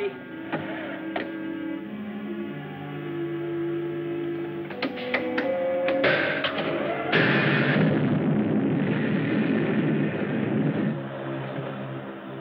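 Dramatic film-score music with long held notes and a few sharp clicks, then from about seven seconds in a loud rushing roar of the sci-fi rocket ship's engine firing up on a test run, lasting about four seconds before the music's held notes return.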